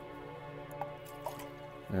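Soft background music with steady held notes. Over it come a few faint drips and small clicks as liquid culture media is squeezed from a bulb baster into small plastic cups.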